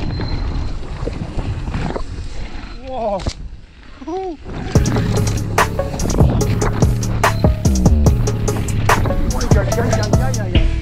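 Phonk trap beat with a heavy bass line and regular hits. It thins to a muffled, quieter break with a few sliding tones, then the full beat comes back in about five seconds in.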